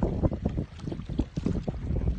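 Wind buffeting a phone microphone outdoors: an irregular, gusty low rumble.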